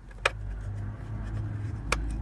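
Handling sounds as a snapped piece of steel clutch-pedal mounting is held into place under a car's dashboard: two light clicks, one just after the start and one near the end, over a low handling rumble.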